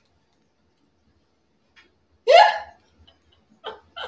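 A woman's laughter: silent at first, then one short, loud yelp of laughter about two seconds in, rising in pitch, with a faint catch of breath near the end.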